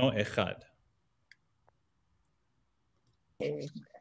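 A man's voice trailing off, then a gap of near silence with two faint clicks, then a woman's voice starting to speak about three and a half seconds in.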